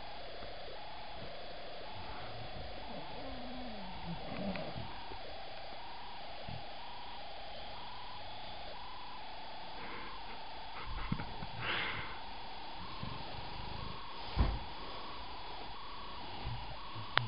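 English bulldog asleep, breathing noisily in a steady rhythmic snore, with a low falling groan about three to four seconds in. There is brief rustling near the twelve-second mark and a single soft thump about fourteen seconds in.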